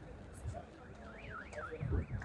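A car alarm sounding faintly, its pitch sweeping quickly up and down about four times a second, starting about a second in.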